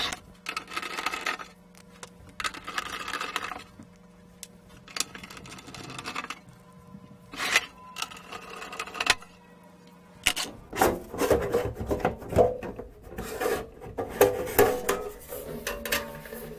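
A heavy sheet-steel pump enclosure being handled on a bench: scrapes and rubs as it is turned over, with a few sharp knocks. From about ten seconds in, a denser run of metallic clatter and rattling as its steel cover comes off.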